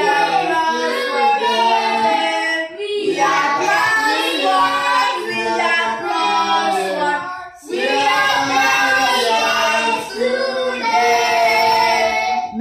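A group of mostly children's voices, with a woman among them, singing a birthday song together, holding long sung notes with two short pauses for breath, the first about three seconds in and the second about seven and a half seconds in.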